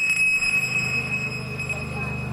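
Electronic soundtrack of a projection-mapping show over loudspeakers: a steady high-pitched tone held above a low buzzing drone.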